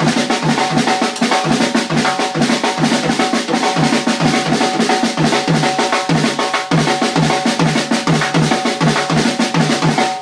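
Drum kit and electric bass playing a fast groove together, busy snare and cymbal hits over a steady low pulse of about three beats a second. The playing cuts off suddenly at the very end.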